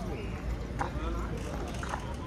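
Footsteps on stone paving, with people talking in the background and a steady low street rumble.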